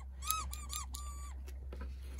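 A squeaker inside an orange plush dog toy squeezed by hand: four short high squeaks in quick succession, the last held a little longer.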